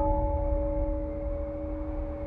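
A struck, bell-like metallic tone from the soundtrack ringing on and slowly fading over a low rumble, its highest note dying away about a second in.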